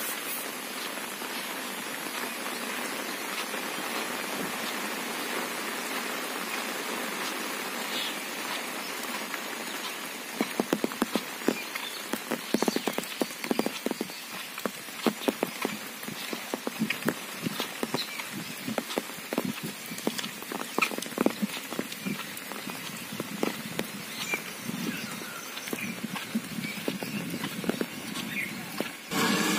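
Steady rain falling. From about ten seconds in, irregular sharp taps of large raindrops hit an umbrella overhead.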